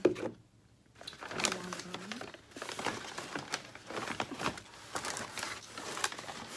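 Plastic and paper takeout bags crinkling and rustling as hands rummage through them, starting about a second in and going on in a steady run of crackles.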